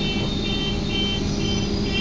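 Double-decker bus engine running steadily, heard from inside the upper deck, with a high electronic beep repeating about twice a second over it.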